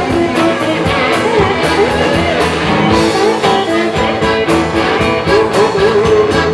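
Live blues band playing: a lead guitar line with notes that bend and glide up and down, over bass and drums with steadily ticking cymbals.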